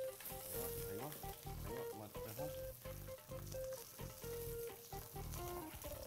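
Fish fillets sizzling steadily as they fry in oil in a frying pan, the fish starting to cook through from underneath. Background music of short notes plays over it.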